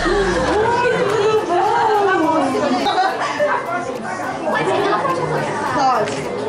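Chatter of several people talking at once, with animated voices rising and falling.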